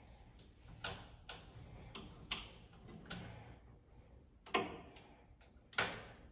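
Irregular sharp metallic clicks and taps from hands working at the lower front edge of a stainless-steel convection oven, about seven in all, the loudest two in the second half.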